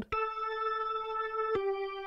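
GarageBand's Soul Organ, a software drawbar organ with its percussion switched on, playing back solo. It holds one sustained note, then about one and a half seconds in steps down to a slightly lower held note, which starts with a short percussive click.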